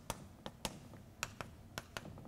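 Chalk tapping on a blackboard as small x marks are drawn: about seven sharp, short taps at uneven spacing.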